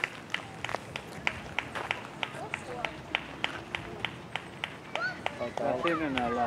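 One person clapping steadily, about three claps a second, applauding runners as they come in to the finish.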